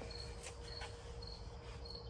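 Crickets chirping in short, high, evenly spaced pulses, a little more than twice a second, faint against a low background hum.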